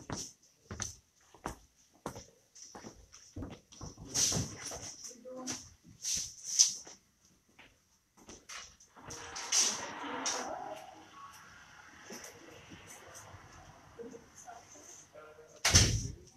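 Microphone and pulpit handling noise: scattered clicks and knocks, a rustle about nine seconds in, and one loud thump near the end.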